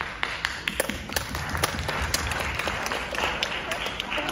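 Audience clapping: a dense, irregular patter of many hands.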